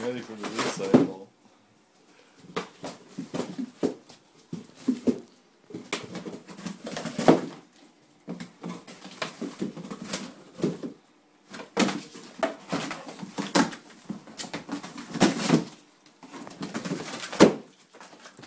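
English Springer Spaniel ripping and chewing a cardboard box, tearing and crunching sounds coming in irregular bursts with short pauses between them.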